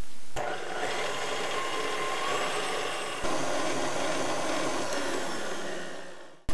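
KitchenAid stand mixer running steadily, its wire whisk whipping egg whites in a stainless steel bowl toward stiff peaks. There is a small step up in level a little past three seconds in, and it fades out near the end.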